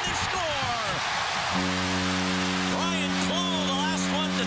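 A hockey arena crowd cheering a home goal. About a second and a half in, the arena's goal horn starts sounding, a steady low blast that holds under the cheering.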